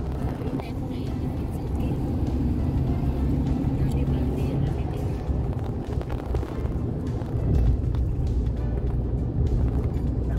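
Steady low rumble of a car's tyre and engine noise, heard from inside the cabin at highway speed. It swells a little about two-thirds of the way through.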